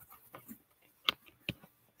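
A few faint light clicks, then a sharper click about a second in and a short knock shortly after, in an otherwise quiet room.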